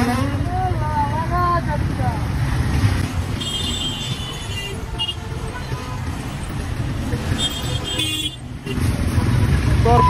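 Dense city traffic close beside a bus: a steady engine rumble with short high horn toots a few seconds in and again shortly before the end.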